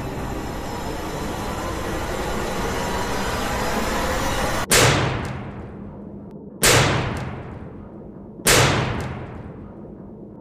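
Horror-trailer sound design: a rising noise swell that cuts off abruptly about halfway through, then three heavy booming hits about two seconds apart, each ringing out and fading.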